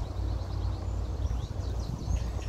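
Small birds calling in a quick run of short, high, falling notes over a low rumble of wind on the microphone.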